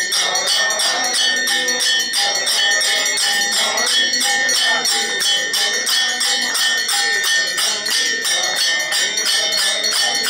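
Temple bells ringing continuously in a fast, even rhythm, about four or five strokes a second.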